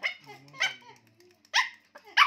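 A small fluffy puppy gives three short, high-pitched play barks at a toy, the first two about half a second apart and the third about a second later.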